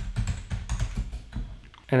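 Computer keyboard typing: a quick, irregular run of keystrokes as a line of code is entered.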